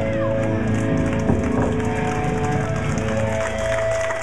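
Distorted electric guitars and bass of a live hardcore metal band ringing out at the end of a song, several long held tones through the amplifiers with no drums.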